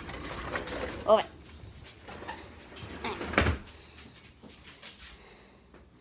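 A house door being opened and pulled shut, with one loud thud about three and a half seconds in.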